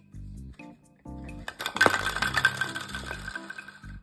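Toy bowling pins knocked over by a guinea pig, clattering onto a hardwood floor in a burst of knocks and rattles that starts about a second and a half in and rings away over the next two seconds. Background music plays throughout.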